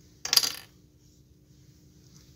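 A brief clatter of small hard objects knocking together about a quarter second in, as makeup items are picked up or set down. A faint steady hum lies underneath.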